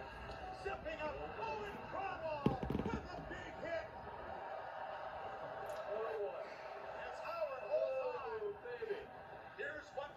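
Play-by-play commentary from a televised hockey game, heard through the TV speaker, with a short burst of knocks about two and a half seconds in.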